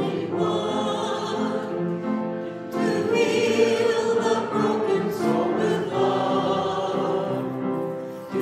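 Church congregation singing a hymn together, with sustained sung notes. After a brief break about three seconds in, it comes back louder.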